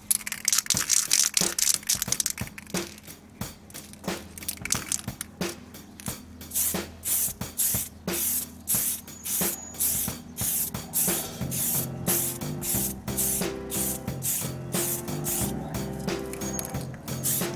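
Aerosol spray can of clear coat spraying onto a car body panel. One long hiss runs for about two seconds, then a steady run of short spurts, about two a second.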